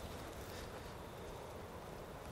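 Quiet outdoor background: a faint, steady hiss with no distinct sounds standing out.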